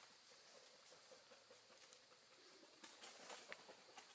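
Near silence: faint outdoor background, with a few soft, irregular ticks about three seconds in.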